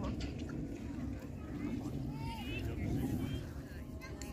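Faint talking of people at a distance over a steady low rumble.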